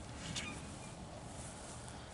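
Quiet outdoor ambience: a faint steady hiss, with one brief high chirp about half a second in.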